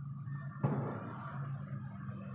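A single sharp knock a little over half a second in, fading away over the next second, over a steady low hum.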